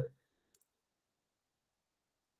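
Near silence after a man's voice cuts off, with one faint short click about half a second in.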